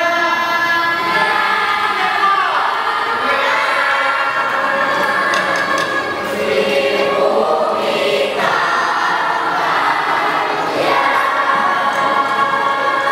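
A large group of children singing together as a crowd, holding long notes that slide down in pitch about two seconds in, then moving to new held notes several times.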